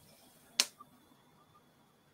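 A sharp metallic click from fly-tying tools at the vise about half a second in, followed by a fainter click.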